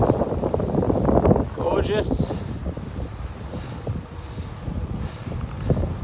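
Wind buffeting the microphone of a camera on a moving bicycle, loudest in the first second and a half, then easing to a lower rumble with scattered small clicks and rattles.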